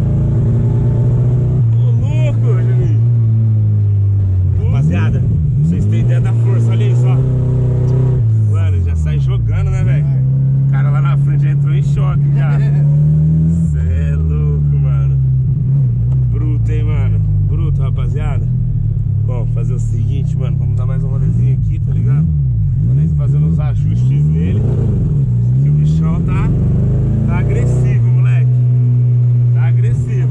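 Chevette's engine heard from inside the cabin while the car is being driven, revving up and dropping back again and again through the gears. There are fast rises and falls in the latter half, and it settles to a steadier note near the end.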